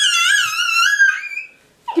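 A young child's loud, high-pitched squeal: one long wavering note lasting about a second and a half, then trailing off.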